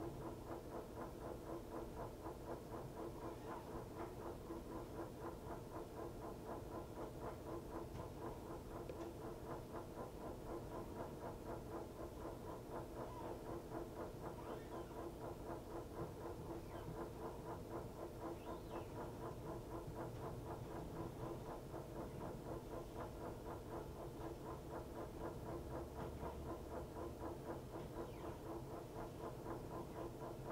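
Montgomery Ward Signature 2000 top-load washer running with a steady hum and a fast, even pulse, with a few faint high squeaks now and then.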